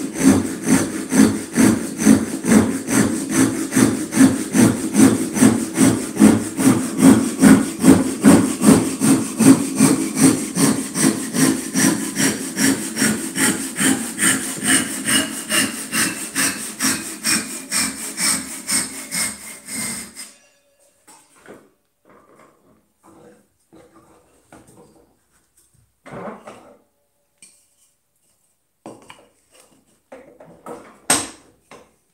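Japanese double-edged (ryoba) pull saw rip-cutting a board clamped upright in a vise, using its rip teeth: a steady rhythm of about two strokes a second. The sawing stops about two-thirds of the way in, followed by a few light knocks and handling sounds.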